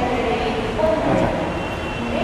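Metro train running through the station: a steady rumble.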